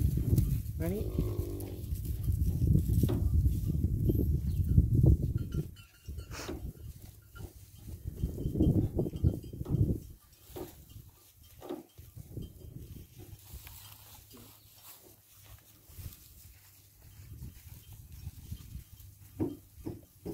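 Cattle calling in a herd: a call about a second in and a longer one around nine seconds, over a loud low rumble in the first six seconds; after ten seconds it turns quieter, with scattered light knocks.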